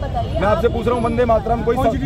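A man speaking Hindi into a handheld microphone, with a steady low rumble underneath.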